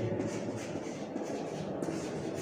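Chalk scratching and tapping on a blackboard as a word is written, over a steady low background rumble.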